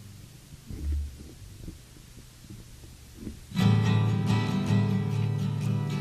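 Quiet studio room tone with a low bump about a second in, then a guitar suddenly starts strumming chords about halfway through and keeps strumming, a sound-check strum to hear the guitar in the monitoring.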